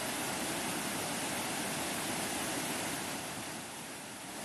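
Muddy floodwater after heavy rain, rushing fast over stones and ground: a steady rushing noise that eases slightly near the end.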